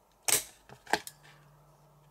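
Handheld plier-style hole punch biting through a sheet of grey board: one sharp, loud snap about a third of a second in, then a softer click just before the one-second mark as the punch works along the edge.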